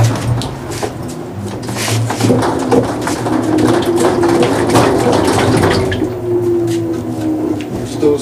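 Two Fisher & Paykel Smartdrive direct-drive washing machine motors spinning together in parallel, one driven by hand and powering the other as a three-phase generator. A steady hum with a whining tone that slowly falls in pitch over the last few seconds as they slow, with scattered clicks and knocks.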